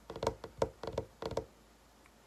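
A quick run of knocks on a hard surface, several short strikes in small clusters over about a second and a half.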